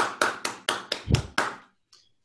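A single person clapping their hands, a quick even run of about four claps a second that stops near the end.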